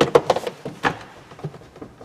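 A sharp knock, a quick run of clicks, and another knock just under a second in, from a minivan door being pushed and handled to check that it is latched.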